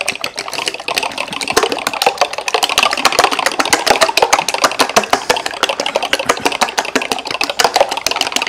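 Raw eggs being beaten briskly in a glass measuring cup: a utensil clicks rapidly and evenly against the glass, many strokes a second, as the eggs are scrambled.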